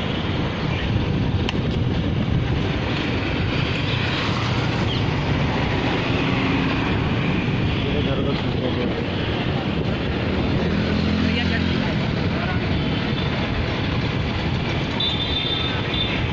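Street noise: vehicles running and passing in a steady din, with indistinct voices of people nearby.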